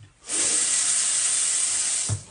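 Water from a bathroom sink tap running in a steady full stream, turned on just after the start and cut off suddenly near the end.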